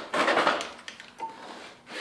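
A plastic upright vacuum cleaner clattering as it is flipped over and laid down on a concrete floor. A rattling burst comes just after the start, then a few lighter knocks as it settles.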